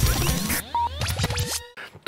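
Radio station ident jingle: electronic music with turntable-style scratching and sweeping pitch glides, which cuts off sharply just before the end.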